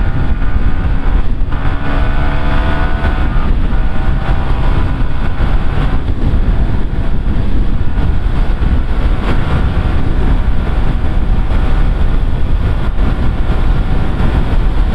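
Yamaha sport motorcycle under way with wind noise over the microphone; the engine note rises as it accelerates and shifts up through the gears in the first few seconds, then settles to a steady cruise in sixth gear.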